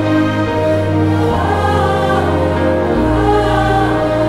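Orchestral film-score music with a choir holding long wordless notes over a sustained bass; the bass moves to a lower note about three seconds in.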